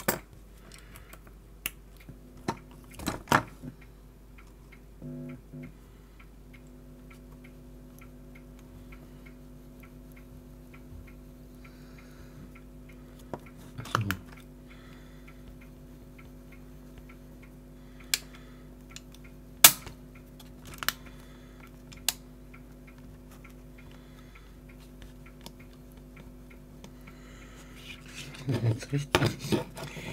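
Scattered sharp clicks and knocks of a cassette player's mechanism and housing being handled, over a steady low hum that starts about 2 seconds in and fills out a few seconds later, running until speech begins near the end.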